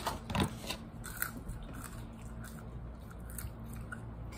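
Close-up chewing and biting of a meal of buffalo wings and fries, in scattered wet clicks with the loudest bite about half a second in. A faint steady low hum runs underneath.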